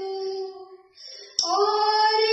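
A young woman singing solo: a long held note fades out just before the middle, a brief pause for breath follows, and a new sustained note starts with a click about three-quarters of the way in.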